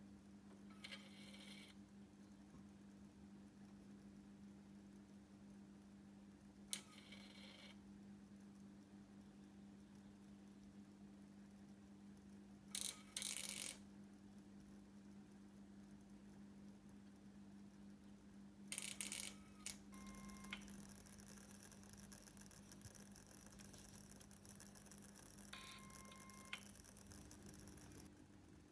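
A high-voltage electric arc of about 40,000 volts between electrodes in a boiling flask, fired in short pulses by a microcontroller: four brief bursts, each about a second long, roughly six seconds apart, over a faint steady hum.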